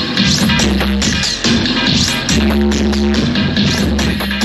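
Dub music played loud through a sound system at a dance: deep bass notes held about a second each under a steady beat.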